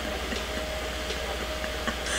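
Steady noise inside a car, with a faint steady tone running through it.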